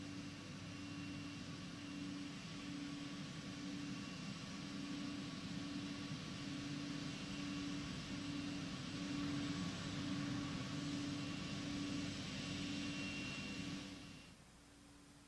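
Steady hiss of an open broadcast audio line with a low hum that pulses on and off, heard between countdown calls; it drops away suddenly at the end.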